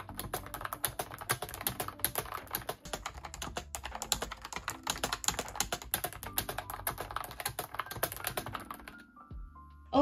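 Fast, continuous typing on a pink E&Woma (Ubotie) Bluetooth keyboard with round typewriter-style keycaps, a non-mechanical keyboard: a quick stream of key clicks that stops about nine seconds in.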